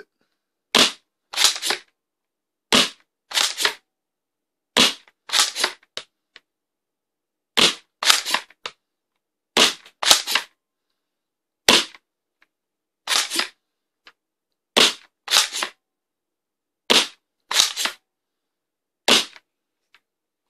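Spring-powered foam dart blaster firing about ten shots, one every two seconds or so. Each shot is a sharp clack paired with a second clack about half a second away.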